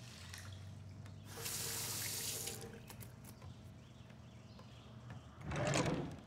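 A water tap runs into a sink for about a second and is then turned off. A brief, louder noise follows near the end.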